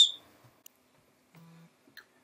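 Near silence: room tone after the end of a spoken word, with a brief faint low hum about a second and a half in.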